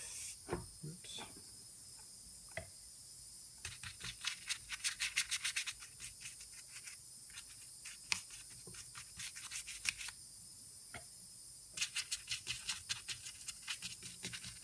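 Small bristle brush scrubbing washing-up-liquid soap mix onto a two-stroke engine's aluminium crankcase, in two bursts of quick back-and-forth strokes with a few single taps between. The soap is being lathered over the casing and screw holes so that air leaking from the pressurised crankcase would show as bubbles.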